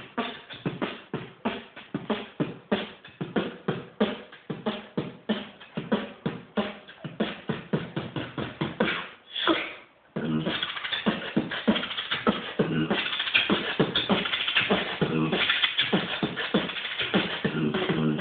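Solo human beatboxing: a rhythm of sharp, percussive vocal strokes for about ten seconds, ending in a rising swell and a brief break. It then resumes as a denser, more continuous pattern with held low tones near the end.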